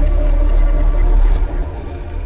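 Logo sound effect: a loud, deep rumble with a thin steady high tone over it. The high tone stops and the rumble eases off about a second and a half in.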